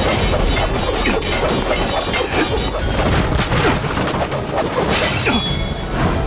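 Sword-fight sound effects: a rapid, unbroken run of crashes and impacts over background music.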